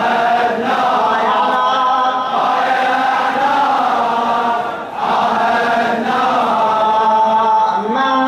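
A large crowd of men chanting together in unison, a Shia mourning chant, its long held lines broken by a short gap about five seconds in.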